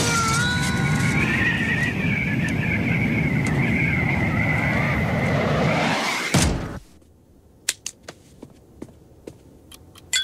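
Wind rushing in through an open airliner cabin door in flight, a loud steady rush with a few wavering high whistling tones in it. About six and a half seconds in, the door is slammed shut with a heavy thud and the rush cuts off suddenly, leaving a quiet cabin with a few faint clicks.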